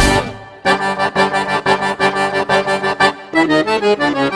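Piano accordion playing a gaitaço, a fast run of short repeated notes over a band with drum hits. A chord rings out and fades at the start, and the quick playing starts up again about two-thirds of a second in.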